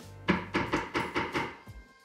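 A metal spoon knocked rapidly against a blender jar, about seven quick taps in a row, shaking thick coconut cream off into the jar.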